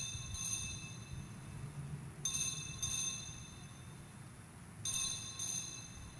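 Altar bells rung at the elevation of the chalice, right after the consecration: three rings about two and a half seconds apart, each a quick double ring of high, clear tones that die away.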